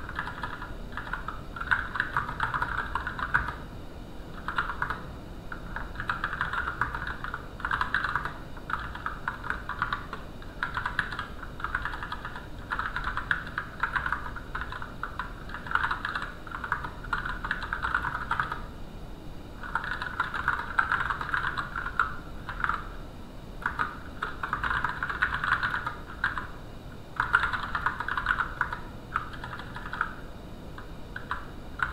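Typing on a computer keyboard: runs of quick keystrokes, each run lasting one to three seconds, broken by brief pauses as a line of text is typed out.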